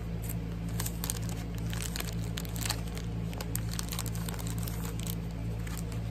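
Clear plastic packet crinkling as a pack of paper ephemera pieces is opened and handled: many small irregular crackles over a steady low hum.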